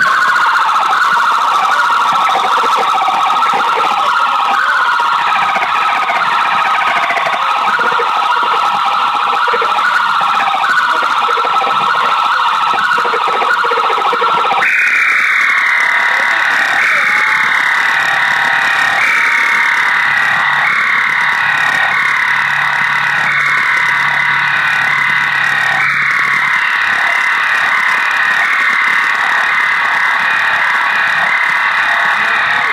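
Loud electronic noise in a live noise-music performance: a dense, steady drone with siren-like falling pitch sweeps repeating every second or two. About halfway through it jumps abruptly to a higher pitch and carries on sweeping down in the same pattern.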